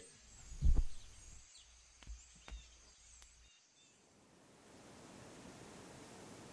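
A dull thump just under a second in and two lighter taps a second later, then a steady outdoor background hiss with faint chirps.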